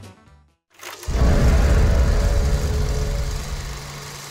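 The end-credit music fades out in the first half second. About a second in, a channel-logo sound effect starts: a loud whooshing swell with a deep low rumble that slowly dies away into a steady low hum.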